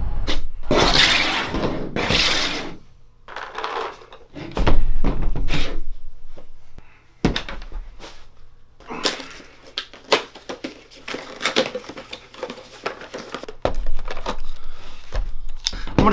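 Handling noise: a heavy thunk about five seconds in, then a run of short clicks and knocks as plastic paintball gear and a GoPro are moved about and set down on a table.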